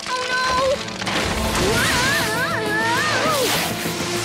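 Animated ice wall cracking and giving way: a loud crashing, rushing noise starting about a second in, over film-score music with held notes. Wavering high tones rise and fall above the noise.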